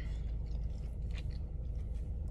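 A person chewing a mouthful of crunchy chocolate protein pop-tart, heard as a few faint soft clicks over a steady low rumble of the car cabin.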